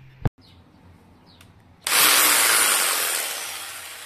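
A power tool cutting wood: a loud, even hissing noise that starts abruptly about two seconds in and slowly fades away. A short sharp knock comes just before it, near the start.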